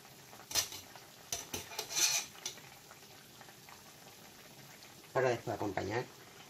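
A few light clinks and scrapes of a kitchen utensil in the first couple of seconds, over the faint steady bubbling of a pan of courgette soup boiling on the stove.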